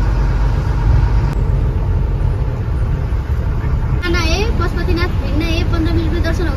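Steady low rumble of a moving tour bus, engine and road noise, heard from inside the cabin. About four seconds in, a woman's voice starts talking over it.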